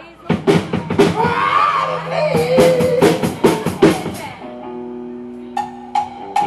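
Live band playing: a drum kit comes in with quick hits and a voice over it, then held notes ring out steadily for the last second and a half.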